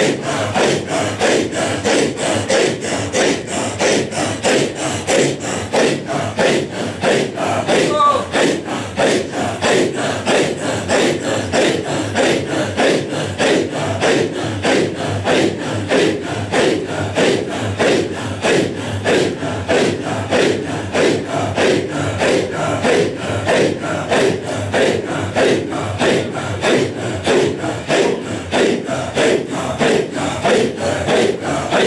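A circle of men performing a Sufi hadra, chanting the dhikr together in a fast, even rhythm.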